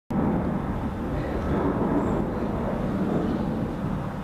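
Ford Mustang GT's 5.0 V8 idling steadily through a custom-made stainless-steel sport exhaust, a low, even rumble.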